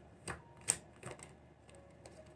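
A deck of tarot cards being shuffled by hand: a few light, sharp card clicks and slaps, the loudest a little under a second in.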